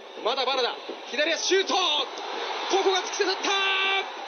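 Television commentator's excited shouting at a goal, in short swooping cries ending in one long held call, over steady crowd noise in the stadium.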